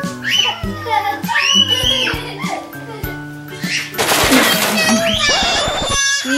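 Background music with toddlers' voices over it. About four seconds in there is a loud, harsh burst of noise, then a child's high-pitched crying out as she falls on the concrete.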